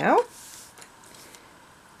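Faint, soft rustle of hands handling a crocheted granny square on a paper-covered table, fading out within about a second.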